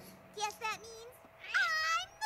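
High-pitched cartoon pony voices making short squeaky, wordless exclamations about half a second in, then a louder, longer high cry near the end.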